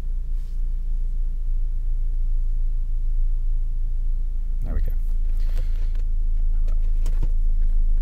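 Renault Safrane 2.0's four-cylinder petrol engine idling steadily at about 1,000 rpm, heard from inside the cabin as a low, even hum. A brief noise cuts in about five seconds in.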